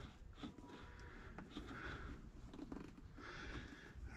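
Faint breathing close to the microphone, with a few soft handling ticks, in a quiet enclosed space.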